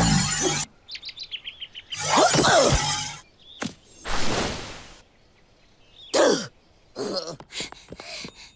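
Cartoon sound effects: a loud magic swirl that cuts off suddenly under a second in, then birds chirping in a forest, with several swooshes and sliding tones between them.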